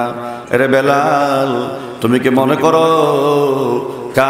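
A man's voice chanting in long, drawn-out melodic phrases, the sung delivery of a Bengali waz sermon, in two held phrases with a short break about two seconds in.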